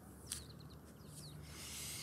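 Faint birdsong: many short, quick falling chirps from small birds, over a low steady hum. A single sharp click sounds about a third of a second in.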